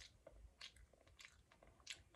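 Faint chewing of a hotteok (Korean sweet filled pancake), with about three soft, short mouth clicks.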